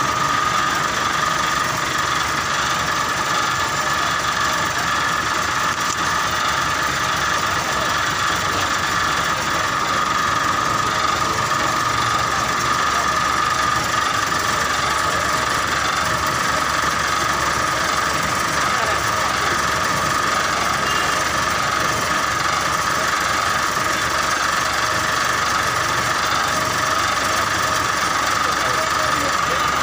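Large bus engine idling steadily, with a constant high whine over its running, and people talking around it.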